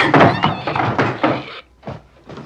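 Horror-film soundtrack: an animal-like squeal that wavers in pitch, over heavy thunks and bangs, cutting off sharply near the end.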